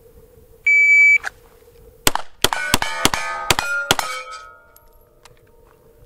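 A shot timer beeps once, then about a second later a Steyr L9A1 9mm pistol fires a fast string of shots, each hit ringing on steel plates. The ringing fades out about half a second after the last shot.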